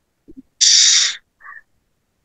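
A single forceful, hissing breath blown out, about half a second long, followed by a faint short puff of breath.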